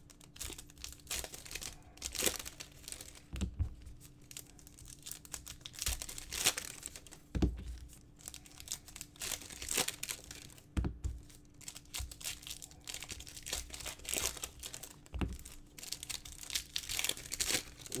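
Foil Panini trading-card packs being torn open and crinkled by hand, in irregular bursts of rustling, with a few soft thumps as packs and cards are handled and set down.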